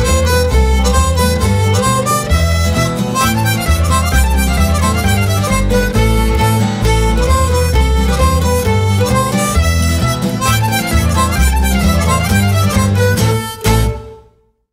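Band music with a blues harmonica playing lead over bass and drums, closing on a final hit that dies away just before the end.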